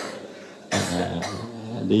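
A man coughs once, a sudden harsh burst about two-thirds of a second in that fades within about half a second.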